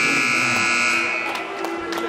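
Basketball scoreboard horn sounding one long steady buzz, which cuts off about a second and a half in, during a stoppage in play.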